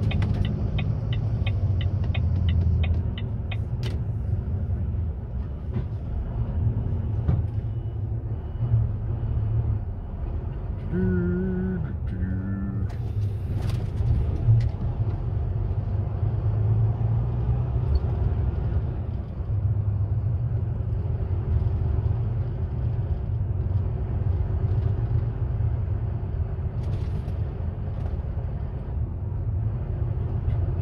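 Articulated lorry's diesel engine running at low speed, heard from inside the cab as a steady low rumble. A quick, even ticking of the turn indicator runs for the first three seconds, and a short hiss comes about halfway through.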